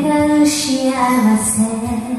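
A woman singing a slow ballad. She holds one long note that steps down to a slightly lower pitch about a second in.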